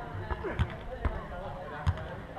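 A footvolley ball struck by players during a rally: about three dull thuds, the loudest near the end, with voices calling in the background.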